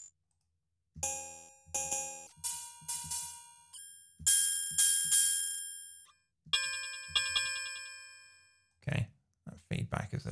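Ableton DS Clang FM drum synth run through two Phaser-Flanger effects, playing a series of metallic, bell-like electronic clang hits starting about a second in. Each hit rings out and decays, and pitch and tone shift from hit to hit as the rack's macros are randomized.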